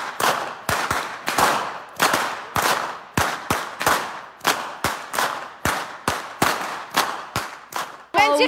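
Swiss festival whips with braided jute-and-flax lashes being cracked in a steady rhythm: a run of sharp cracks, two to three a second, each ringing off briefly.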